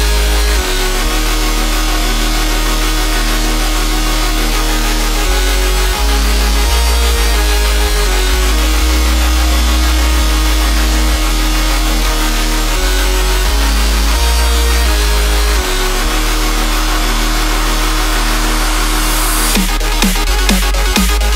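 Electro house track in a Melbourne bounce remix: loud held synth bass notes that change every second or two under layered synth chords. Near the end a rushing noise swells upward into the next section.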